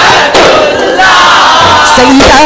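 A group of male voices shouting and chanting together over daf frame drums in a Daf Muttu performance. There are two loud drum strikes, about a third of a second in and at about one second.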